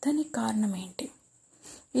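Speech only: a voice narrating in Telugu, pausing briefly after about a second and picking up again near the end.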